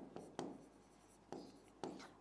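A stylus writing on an interactive display board: faint short strokes and taps, four of them spread across the two seconds.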